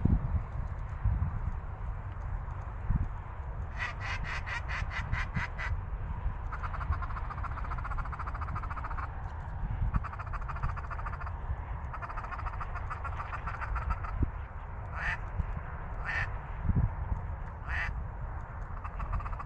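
Canada geese honking and clucking: a rapid run of calls about four seconds in, then a flock calling together in stretches, and a few single loud honks near the end. A steady low rumble of wind on the microphone runs underneath.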